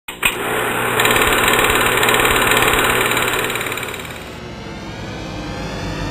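Film projector running, a fast steady mechanical rattle with hiss that starts with a click and dies down after about four seconds.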